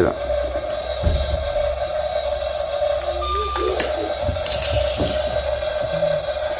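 Toy radio-controlled excavator giving a steady high whine that breaks off briefly partway through, when a short higher tone sounds, with a few soft knocks.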